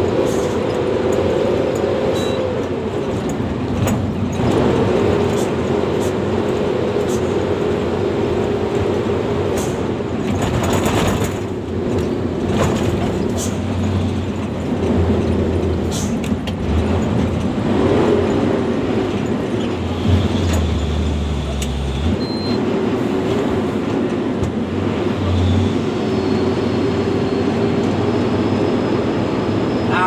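Hino 500 truck's diesel engine running under load, heard from inside the cab on a rough dirt road. Its note rises and falls with throttle, and short knocks and rattles come from the cab as the truck goes over bumps.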